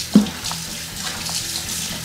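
Kitchen tap running steadily into a sink, with one dull knock near the start.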